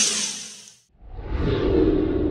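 Edited-in whoosh sound effects for a title card: a high, hissing whoosh that fades out within the first second, then, about a second in, a second, lower whoosh with a deep rumble under it.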